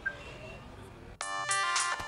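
A mobile phone keypad gives one short beep right at the start. A little over a second in, a mobile phone's musical ringtone starts up suddenly: a bright melody of quick, many-toned notes.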